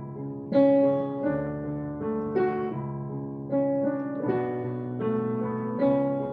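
Solo piano playing a slow piece, a new note or chord struck about once a second over held chords.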